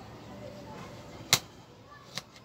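Hand-squeezing small citrus fruit over a glass bowl of vinegar, with one sharp click against the bowl about a second in.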